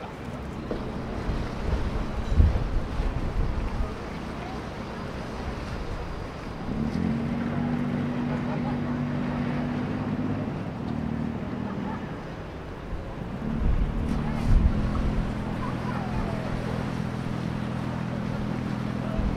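The engine of a canal tour boat running steadily as a low drone, growing louder about seven seconds in and again in the last few seconds. Gusty wind buffets the microphone a couple of times.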